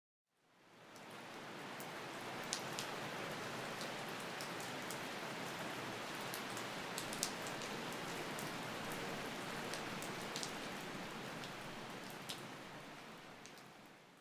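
Steady rain falling, with a few sharp drip ticks over it. It fades in over the first second or so and fades out near the end.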